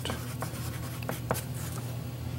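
Chalk writing on black construction paper: a series of short, separate strokes as a two-word label is chalked on, over a steady low hum.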